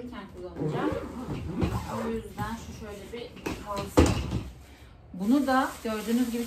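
A soft-sided fabric suitcase being shut and set down upright on its wheels, with one loud thump about four seconds in, under a voice.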